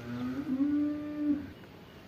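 A single long, low animal call that rises at the start, is held steady for about a second, then drops off.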